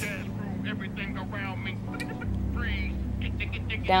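Quiet talking over a steady low hum that gets louder about halfway through, with one sharp click near the middle.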